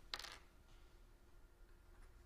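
A short scratch of writing on a drawing surface just after the start, then near silence with faint room tone.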